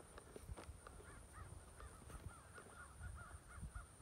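A bird calling faintly in a quick run of short, arched notes, about four a second, starting about a second in.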